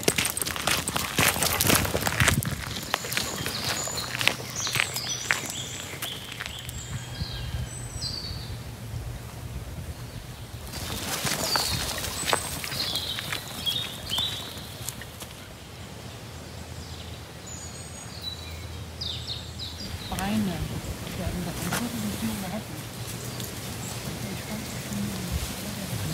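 Footsteps crunching on a gravel path at the start, then songbirds singing in woodland, in short chirps and whistles that come in several bursts.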